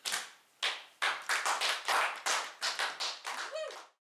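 Brief applause from a small audience at the end of an unaccompanied song: scattered hand claps that thin out near the end.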